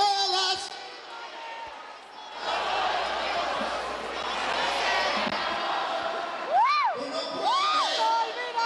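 A cappella singing ends a phrase in the first half second, then a large crowd cheers. Near the end two loud rising-and-falling shouts ring out over the cheering.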